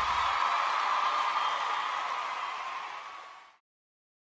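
A live band's song ending: the last low note dies away within the first half second, leaving a hissy wash of stage and crowd noise that fades down and cuts off to silence about three and a half seconds in.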